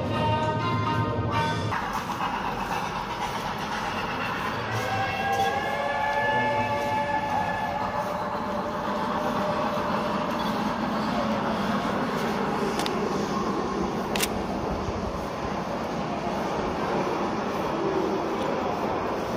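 Music stops about two seconds in, leaving a steady rushing background noise that carries through the tunnel. A wavering, tune-like tone runs for a few seconds in the middle, and two sharp clicks come near the end.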